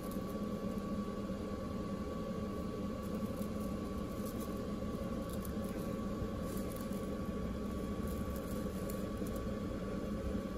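Steady background hum with a thin high tone throughout, from a fan or appliance in the room. Against it, a few faint light clicks from jewelry pliers working a stiff jump ring.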